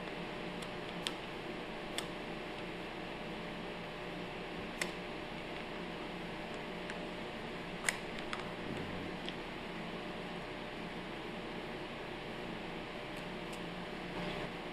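Steady faint room hiss with a few soft, sparse clicks of small pump parts being handled and picked out of a piston pump head by hand, the loudest click about eight seconds in.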